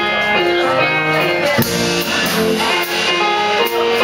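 Live jazz quartet playing: electric guitar carrying a melodic line over piano, electric bass and drum kit, with cymbals struck at a steady pulse.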